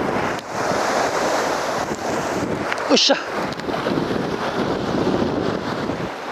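Steady wind noise buffeting the microphone, mixed with sea surf washing against rocks, in a strong side wind. A short shout about three seconds in.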